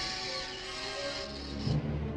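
Suspenseful film score under a sudden hiss of noise that cuts in at once, holds, then stops, followed by a low thud near the end.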